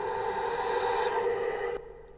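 Trailer sound-design riser playing back: a steady, droning synthetic tone with a noisy edge that grows a little and then fades out about a second and a half in.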